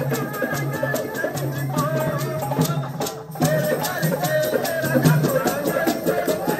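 Live Punjabi folk music with a dhol and jingling rattle percussion keeping an even beat under a melody line. There is a brief break about three seconds in.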